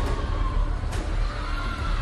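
A woman's long high-pitched wailing cry, held and rising a little midway, over a steady low rumble.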